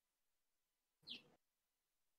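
Near silence, broken about a second in by one brief, faint high-pitched sound.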